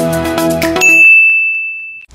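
Intro music that stops just under a second in, followed by a single high bell 'ding' sound effect that rings on and slowly fades.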